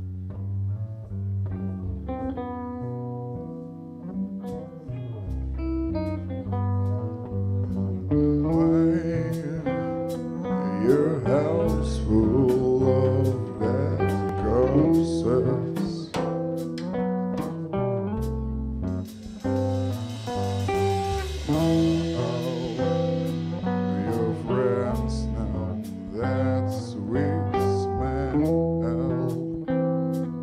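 Rock band playing live: bass and guitar over drums. The guitar plays bent notes in the middle, and a cymbal wash comes in past the halfway point.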